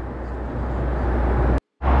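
Steady in-flight cabin noise of a Boeing 757-200 airliner: a low drone under a rushing hiss of engines and airflow. It cuts out for a moment near the end and comes back louder.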